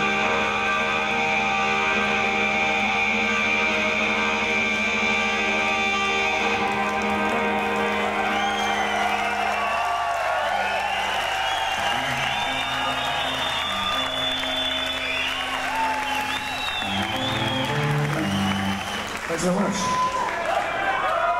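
Live rock band's electric guitars holding a final chord that rings out, then dying away about eight to ten seconds in. A crowd cheering and whistling takes over, while a few low guitar notes are picked singly between songs.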